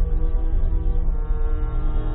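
A deep, horn-like drone from a background music score, with sustained layered tones over a heavy pulsing bass; the upper notes change about a second in.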